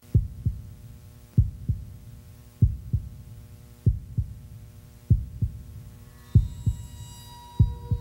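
Heartbeat sound effect: slow paired lub-dub thumps, one pair about every second and a quarter, over a steady low hum, with high tones fading in near the end.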